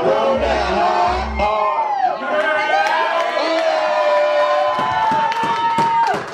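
Live hip-hop music through a club sound system with the crowd cheering. Two deep bass hits from the beat come in the first second and a half, then the beat drops out while a voice sings gliding notes and holds one long note near the end.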